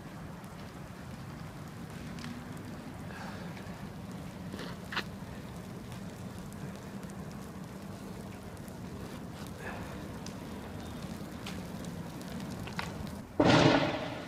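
Outdoor street ambience with a steady low rumble, broken by a few sharp pops and cracks, then a loud burst of noise near the end that dies away over about half a second.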